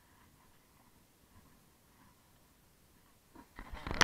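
Largemouth bass splashing into shallow water as it is let go, a short burst of splashing near the end that peaks in one loud splash and stops abruptly.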